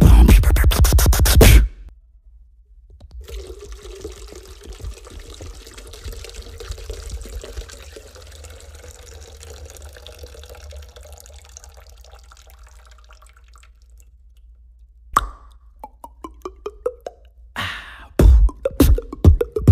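A beatboxed rhythm stops suddenly about two seconds in. After a short pause comes a faint, long stretch of trickling and dripping water. Then a sharp click and a quick run of mouth-made plops rising in pitch, and the beatboxing starts again near the end.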